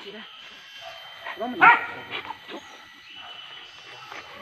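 A man gives one shouted call about a second and a half in, with short, fainter barks or yelps from hunting dogs after it.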